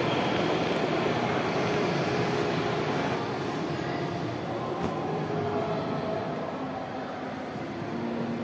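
Steady hubbub of a crowded indoor shopping arcade, a dense wash of distant voices and activity in a large hall, easing slightly in the second half.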